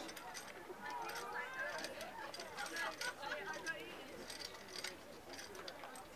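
Background talk from people standing around, with a few faint clicks.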